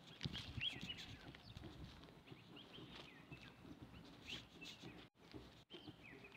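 Small birds chirping faintly in short, repeated calls, with soft footsteps on dry grass.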